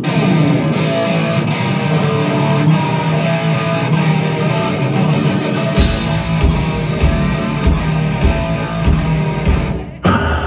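Live heavy rock band starting a song: electric guitar rings out alone at first, then drums and bass come in heavily about six seconds in.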